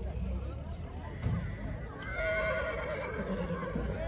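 A horse whinnying in a long, slightly wavering call that starts about two seconds in and lasts nearly two seconds, heard over crowd voices and the low rumble of horses milling in a tight pack.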